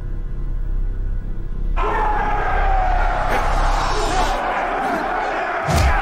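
Dark, tense film score over a low steady drone. About two seconds in, a louder wash of many men's voices shouting from a watching crowd joins it, and there is a single heavy thud near the end.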